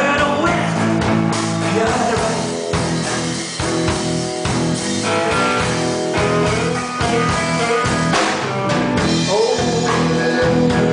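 Live band: a man singing into a handheld microphone over electric guitar and drum kit.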